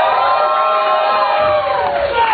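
Audience whooping: a long, high-pitched cheer from several voices that swells, holds and falls away near the end.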